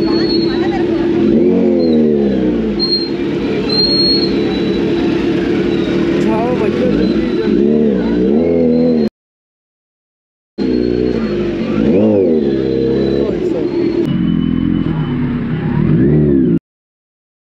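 Kawasaki Z900's inline-four engine idling and being revved in repeated short blips, each rising and falling in pitch, as the bike creeps through a crowd. All sound cuts out for about a second and a half just past the middle.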